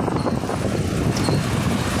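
Strong gale-force wind buffeting the phone's microphone: a loud, steady rushing noise.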